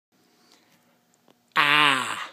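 A low voice sounding the short vowel /a/ ('ah'), the phonics sound of the letter a: one drawn-out vowel starting about one and a half seconds in, falling slightly in pitch.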